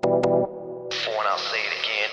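Closing bars of a hard trance track: a synth chord stab hit twice in quick succession, then a filtered voice sample with an echo tail that fades away.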